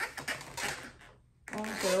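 Hands tapping and sliding along an inflated green 350 latex modelling balloon while it is measured finger-width by finger-width: a run of light, irregular clicks and rubs. It cuts to silence for a moment just past the middle, and a voice counting comes in near the end.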